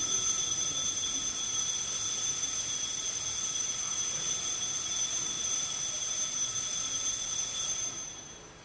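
A steady, high-pitched ringing tone made of several fixed pitches holds at an even level, then fades out quickly near the end.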